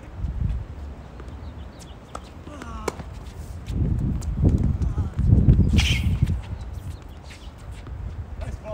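Tennis rally on a hard court: sharp pops of racket strings hitting the ball and ball bounces, the loudest pop about six seconds in, over low uneven thudding and rumbling close to the microphone.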